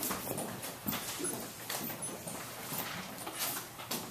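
Quiet room sounds with scattered faint knocks and shuffles: footsteps and the handling of a folder and a plastic water bottle as a speaker walks up to a lectern.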